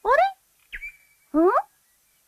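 A young woman's voice in an animated show: two short, questioning utterances, each rising in pitch, the second about a second and a half in. A faint thin high chirp falls and holds between them.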